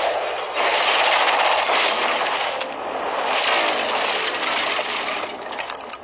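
Cartoon magic spell sound effects of unicorn teleportation: dense hissing, sparkling bursts that swell loud about a second in and again midway, with a short rising whistle near the first swell.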